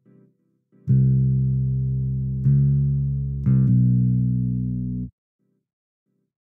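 Sampled electric bass from the Ample Bass P Lite II plug-in, modelled on a Precision bass, playing single held notes as a note is previewed in a piano roll. A note starts about a second in and changes pitch near the middle. It changes twice more in quick succession, then cuts off abruptly about a second before the end.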